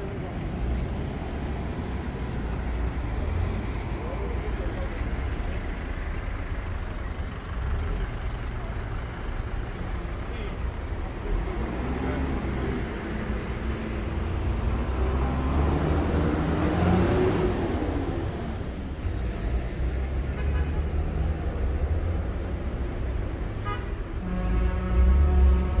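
Road traffic noise on a busy city street: vehicle engines running and passing as a low, continuous rumble, with one engine growing louder and rising and falling in pitch about two-thirds of the way through.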